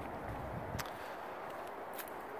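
Quiet outdoor background noise, a steady low hiss, with two soft clicks about a second apart.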